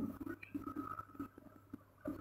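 Faint scratching and squeaking of a marker pen writing numbers on a whiteboard, over a low steady hum.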